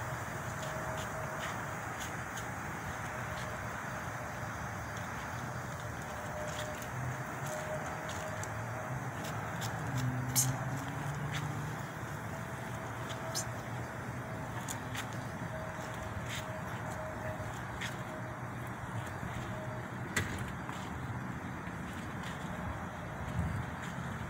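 Steady outdoor background rumble with a faint steady hum over it and a few small clicks scattered through.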